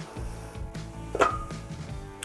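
Background music, with one sharp metallic clink and a short ring a little over a second in as a stainless steel basting dome is set down.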